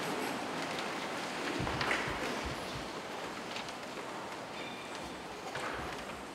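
Steady hiss of room noise in a large church hall, with a few soft knocks and shuffles about two seconds in.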